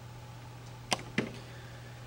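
Two short, sharp clicks about a quarter of a second apart, roughly a second in, over a steady low hum.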